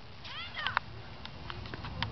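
A brief high-pitched call about half a second in, with a pitch that rises then falls, followed by a few faint knocks over a steady low rumble.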